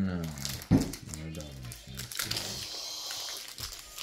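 Plastic wrapper of a hockey card pack crinkling as it is torn open, through the second half. Before it, a child's voice and a sharp knock about a second in.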